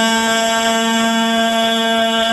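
A man's voice holding one long sung note, steady in pitch and loud, over a public-address system.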